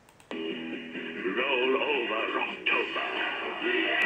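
A 3XY radio station jingle starts abruptly: backing music with a sung melody. It sounds thin, with no deep bass or high treble.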